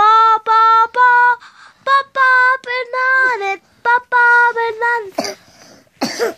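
A young boy singing alone with no accompaniment, a phrase of held notes in a high voice with short breaks between them.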